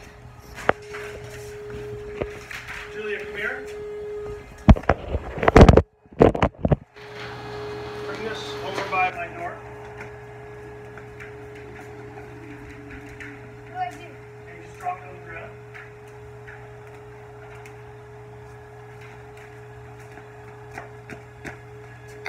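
Handling noise from a phone carried against clothing: fabric rubbing on the microphone, with a few loud knocks about five to six seconds in. Under it run a steady hum and faint voices.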